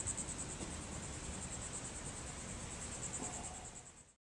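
A steady insect chorus: a high, rapidly pulsing trill, over a faint low rumble, that fades out near the end.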